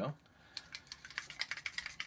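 Faint, rapid, irregular clicks and light rattling, as of small objects being handled.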